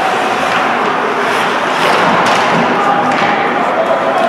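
Indoor hockey rink during play: echoing voices of spectators and players, with occasional thuds of play on the ice.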